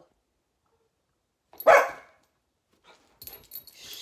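A small dog gives one loud, sharp bark about halfway through, followed near the end by faint rustling.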